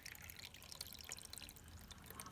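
Faint trickling of water being poured from a mug into a Keurig coffee maker's water reservoir.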